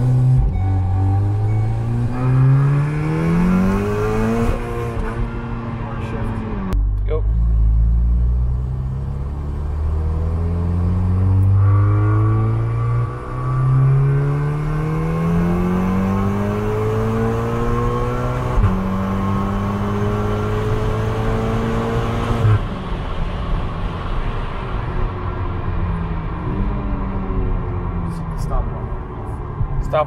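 Built turbocharged Volkswagen Golf R four-cylinder accelerating hard through the gears, heard from inside the cabin. The engine note climbs steadily and drops back at each of several quick upshifts, then falls away as the throttle is lifted about two-thirds of the way through. The pull is on low boost.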